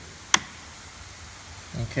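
A single sharp click about a third of a second in: a battery charger's spring clamp snapping onto a battery terminal.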